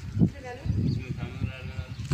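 Indistinct voices with a wavering animal call, lasting about a second from about half a second in.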